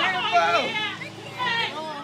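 Several people's voices calling out at once, high-pitched and overlapping, with no clear words.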